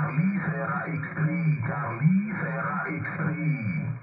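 A ham radio operator's voice received over the air and played through the Malachite DSP SDR receiver. The voice is narrow and thin, cut off at the top as on a single-sideband signal, and it runs on without a break.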